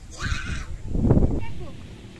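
Short bursts of people's voices: a brief high, breathy sound near the start, then a louder voiced sound about a second in.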